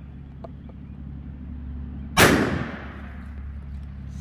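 A single 12-gauge shotgun blast firing a Duplex Kaviar slug about two seconds in: one sharp, loud report with a short ringing tail that fades within about half a second.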